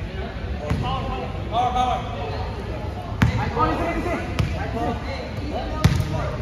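A basketball bouncing hard on an indoor court, about four sharp separate bounces, the loudest one about three seconds in and another just before the end. Players' voices and shouts sound in between.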